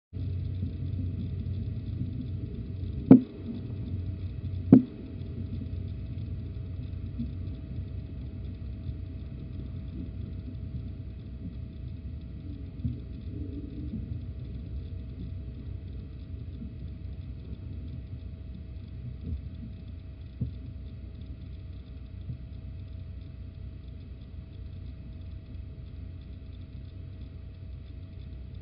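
Steady low hum and rumble of a nest-box camera's sound, with a faint steady tone, broken by two sharp knocks about three and almost five seconds in and a few faint ticks later.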